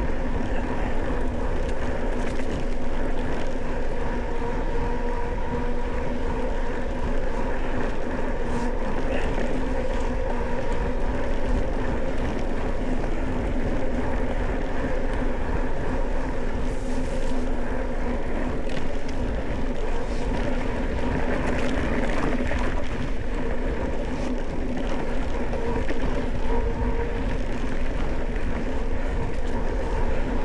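Mountain bike rolling steadily over a dirt track: a continuous drone of tyres on the dirt, with a steady hum in it, and wind rumbling on the microphone.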